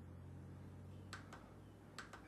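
Near silence: a faint low room hum, with a few faint mouse clicks a little over a second in.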